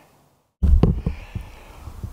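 The sound drops to silence at an edit, then about half a second in a heavy low thump starts abruptly. It is followed by a few light knocks and a low rumble: handling noise at the start of a new clip.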